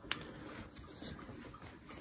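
Faint handling noise from a cloth vacuum-cleaner dust bag with a plastic collar being held and turned: a small click just after the start, then quiet rustling.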